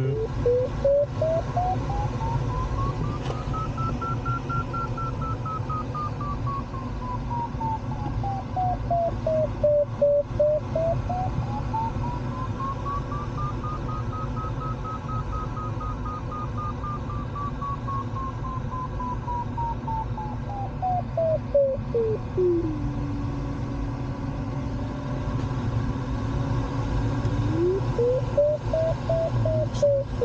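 Glider's audio variometer tone sliding slowly up and down in pitch as the climb rate in the thermal rises and falls: up high twice, then dropping to a low steady tone for several seconds, then rising briefly again near the end. A higher pitch signals a stronger climb. Steady rushing airflow noise in the cockpit runs underneath.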